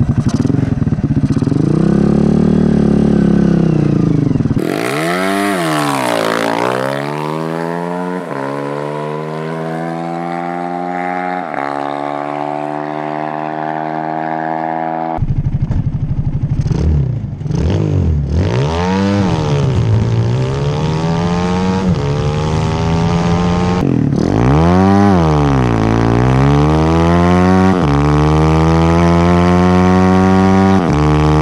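Dirt bike engine powering a go-kart under hard acceleration. The revs climb high, drop sharply at each gear change and climb again, several times over. The sound changes abruptly twice where the recording cuts between cameras.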